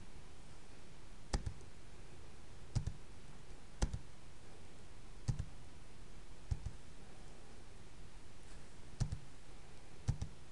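Sharp clicks of a computer input device, about six in ten seconds at uneven intervals, some of them doubled press-and-release clicks, as presentation slides are advanced. A faint steady room hiss lies underneath.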